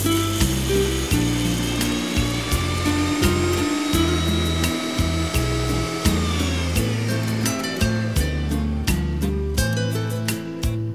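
Electric mixer grinder (Indian mixie) running with a stainless steel jar, grinding ragi with water for ragi milk. Its whine rises in pitch over the first few seconds, drops about six seconds in, and the motor stops just before the end. Background music plays underneath.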